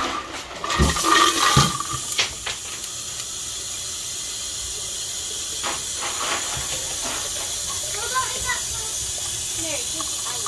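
Kitchen faucet running a steady stream into a plastic water bottle packed with ice. A few knocks come from the bottle of ice being handled in the first two seconds, and the rush of water settles in steadily after that.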